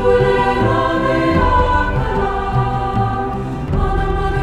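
Two-part treble choir singing sustained lines on invented, syllable-only words, over a low instrumental accompaniment.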